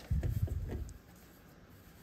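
Hands handling and smoothing a foundation paper and fabric block on a sewing machine's bed: low soft rubbing and a few light bumps in the first second, then quiet.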